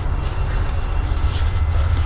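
Steady low rumble on the microphone, with faint rustling and scuffling from people struggling on leaf-covered ground.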